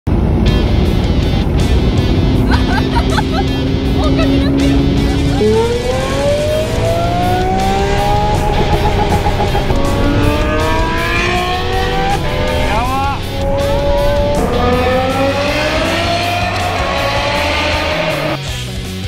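Lamborghini Aventador SV's V12 with a Brilliant aftermarket exhaust under way. It holds a steady note, jumps in pitch about five seconds in, then accelerates hard, its pitch climbing through the gears with an upshift drop about ten and about fourteen seconds in.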